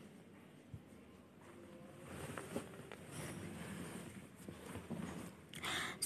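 Eggplant slices deep-frying in oil in a wok: a faint sizzle and crackle of bubbling oil, growing louder about two seconds in. Near the end a spatula moves through the frying slices.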